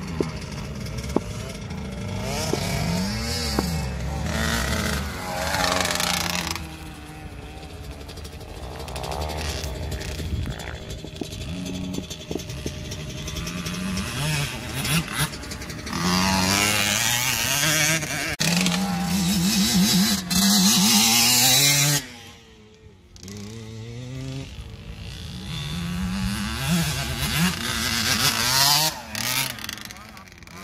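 Small youth motocross bikes, among them a KTM 65 two-stroke, revving hard and shifting up and down through the gears as they ride the track. The engines are loudest as one bike passes close around the middle, and the sound drops sharply for a moment about two-thirds of the way through.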